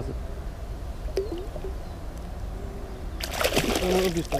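A small pike released from the hands, splashing and thrashing at the water's surface for just under a second near the end.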